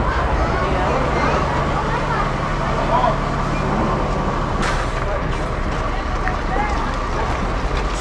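Low, steady engine rumble from lorries driving off a river ferry's deck, under a babble of passengers' voices. A single sharp knock comes a little past halfway.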